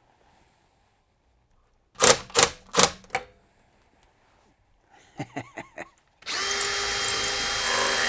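Three sharp knocks, then a few short faint bursts, then a cordless drill running steadily for the last two seconds, driving a screw through drywall into a wood stud.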